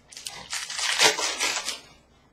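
Crinkling and tearing of a trading-card pack wrapper as a pack is ripped open, a dense crackle that builds about half a second in and dies away just before the end.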